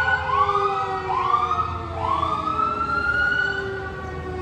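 Fire truck siren: a whooping note that sweeps up sharply and holds, repeating about once a second, over a steady siren tone that slowly falls in pitch.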